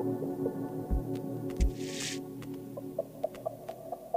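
Electronic IDM music: sustained layered synth tones with two deep thumps about a second in and again shortly after, a brief hiss of noise near the middle, and sparse clicks and short blips toward the end.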